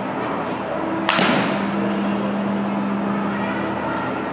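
A softball bat swung at a ball off a batting tee: one sharp crack of contact about a second in, with a brief ringing tail. A steady low hum runs underneath.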